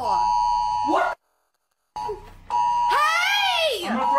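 Emergency alert attention signal: two steady high tones sounding together, with a voice gliding up and down in pitch over it. The sound cuts out completely for almost a second, then the tones come back about two and a half seconds in.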